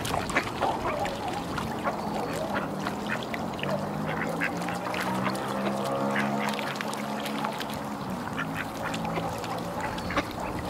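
A flock of waterfowl calling: overlapping drawn-out pitched calls that swell in the middle, over a busy patter of short clicks.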